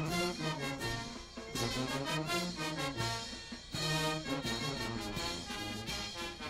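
Brass band playing, with brass carrying the tune over a stepping bass line and drums.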